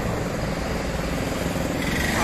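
Steady roadside traffic noise, with the engines of nearby vehicles running.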